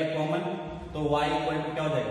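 A man's voice drawing out two long, nearly level syllables, the second starting about a second in.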